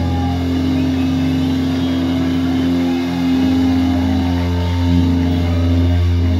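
Live heavy rock band playing loud, holding a low, droning chord on distorted guitars and bass.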